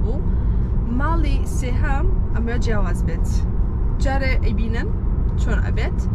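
A woman talking inside a moving car, over a steady low rumble of road and tyre noise in the cabin.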